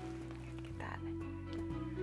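A short, croaky, squelching sputter about a second in as a pump bottle dispenses lotion onto the back of a hand, over soft background music with sustained notes.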